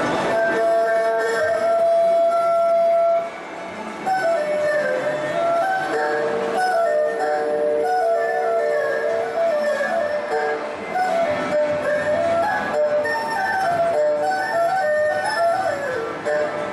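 Erhu playing a slow melody with sliding pitch changes and long held notes, with a brief pause about three seconds in.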